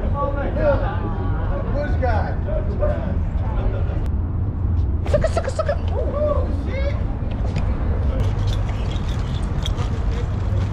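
Passers-by talking, with a steady low rumble of street traffic beneath the voices.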